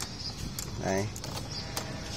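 A few light, sharp clicks of metal hand tools against a scooter's ignition lock housing as a mechanical key lock is fitted back in place.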